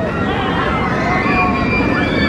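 B&M hyper coaster train running over an airtime hill and into a drop, a steady track noise under the drawn-out, gliding cries of its riders and other voices.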